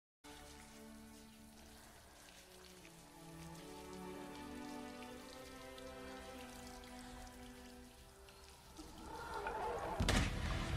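Soft music of slow, held notes over the faint patter of water from a running shower. The water grows louder near the end.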